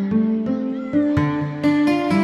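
Progressive house track with plucked, guitar-like melodic notes over sustained synth tones on a regular beat. A short tone bends in pitch about halfway through.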